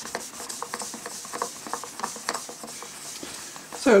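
Cotton kitchen cloth rubbing back and forth over a clear plastic toy cockpit canopy, buffing out scratches with T-Cut, a mild abrasive car polish: a steady, hissy scrubbing with irregular strokes. A man's voice starts just before the end.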